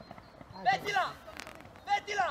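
Shouted calls of young voices across a football pitch during play, two short bursts of shouting a second or so apart, with a single sharp knock between them.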